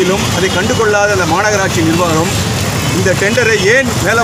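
A man speaking to reporters into press microphones, over steady low background noise from the surrounding crowd.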